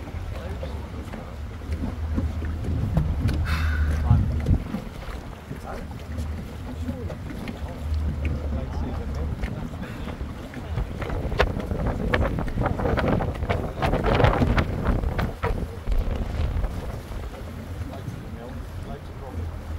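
A small boat's engine running at low speed under wind buffeting the microphone, with water lapping at the hull. A cluster of short sharp knocks and splashes comes about eleven to sixteen seconds in.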